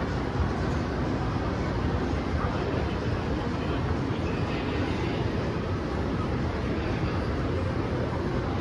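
Steady low rumble of a shopping mall's background noise, with faint distant voices.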